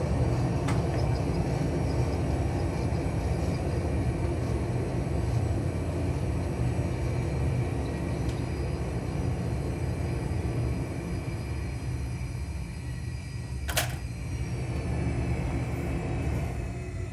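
Simulated Airbus A320 engine and runway-roll rumble under reverse thrust and manual braking during a rejected takeoff. It slowly dies down as the aircraft decelerates, and one sharp click comes about two-thirds of the way through.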